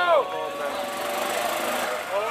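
A wheelie bin being pushed across grass, its wheels and plastic body making a steady rattling rumble, under crowd shouting that breaks off just after the start.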